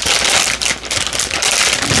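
Plastic blind-bag packaging of Pop Soft plush ducks crinkling and crackling as it is handled, with many quick rustles.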